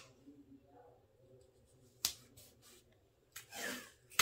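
Tape being pulled from a desktop tape dispenser: a faint click about halfway, then a short rasp of tape unrolling near the end.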